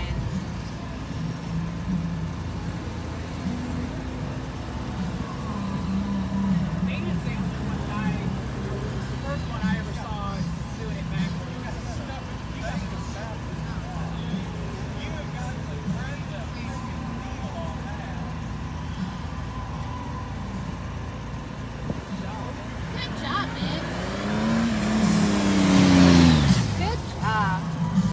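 Motorcycle engine running at low speed, its pitch shifting as it is worked through tight maneuvers. Near the end a motorcycle passes close by, rising then falling in pitch; this is the loudest part.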